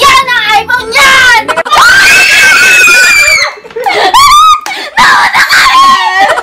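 Young women screaming and shrieking in excitement, with one long, high held scream about two seconds in and a few short rising squeals a little after the middle, among loud shouting voices.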